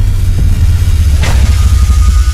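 Sound-designed logo sting: a loud, deep bass rumble with a whoosh about a second and a half in, and thin high tones coming in near the end.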